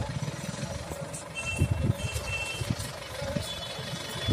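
A vehicle's engine idling, with a few faint, short high tones about halfway through and again near the end.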